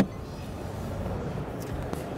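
A single sharp click, then the steady background noise of a busy exhibition hall: an even, featureless hum of ventilation and distant crowd.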